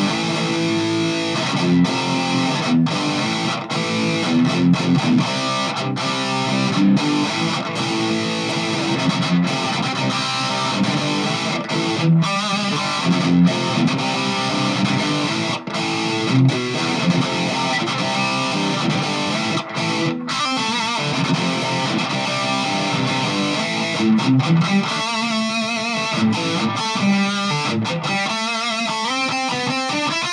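Heavily distorted electric guitar on the bridge pickup through a Boss ME-50's Metal overdrive/distortion setting with the variation engaged, drive at about a third, with huge gain. It plays continuous metal riffs with short breaks between phrases, then held notes with wavering vibrato in the last few seconds.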